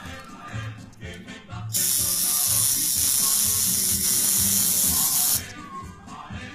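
A loud, steady hiss that starts suddenly about two seconds in and cuts off after about three and a half seconds, over background music with a regular beat.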